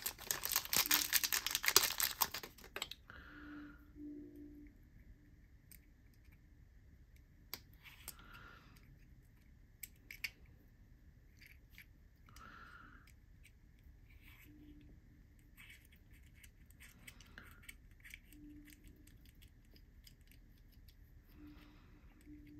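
A small clear plastic bag crinkling and rustling in the fingers for the first few seconds, then only faint, scattered clicks and taps as small metal fidget-tool parts are handled.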